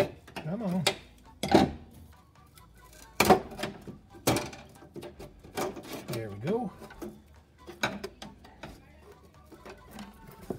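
A metal pry tool scraping and knocking against the steel brake line and floor pan of a 1974 VW Beetle, in irregular sharp clinks and scrapes, while it digs a tar-buried line clip free. A short hum or grunt from the worker comes twice, near the start and just past the middle.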